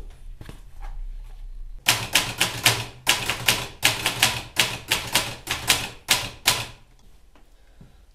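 Manual typewriter being typed on: a quick, uneven run of keystrokes, about five a second, starting about two seconds in and stopping just before seven seconds.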